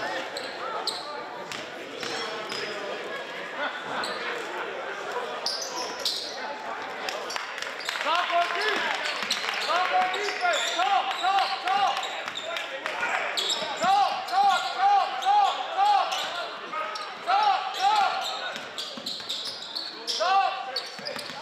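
Basketball game sounds on a hardwood gym floor: the ball bouncing and voices echoing through the hall. From about eight seconds in come rapid runs of short high sneaker squeaks as players cut and stop on the court, loudest near the end.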